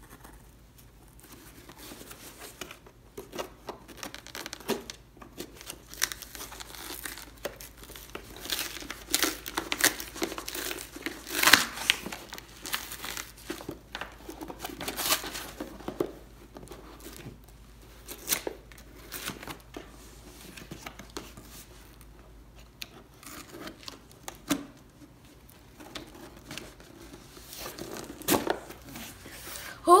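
Cardboard shipping box being cut along its sides and pried open by hand: irregular scraping, tearing and rustling of cardboard and paper, in short uneven strokes with one louder tear about a third of the way in.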